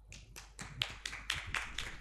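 Applause from a small audience: individual hand claps heard separately, several a second and unevenly spaced.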